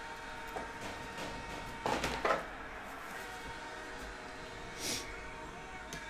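Quiet room with a faint steady hum, broken by a couple of brief soft sounds: a short mid-pitched noise about two seconds in and a short, hissy rustle just before five seconds, from trading cards being handled on the table.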